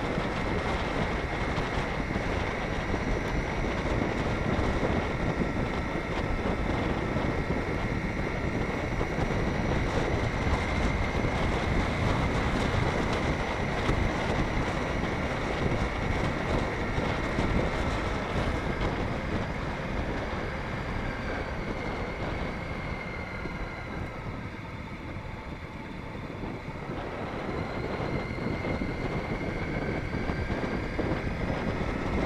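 Riding a motorcycle: wind rushing over the microphone, with the bike's engine running underneath. The noise eases off about three-quarters of the way through as the bike slows, then builds again.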